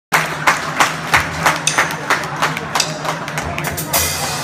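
A live band's quiet intro: sharp, even percussive clicks about three times a second over a steady held low note.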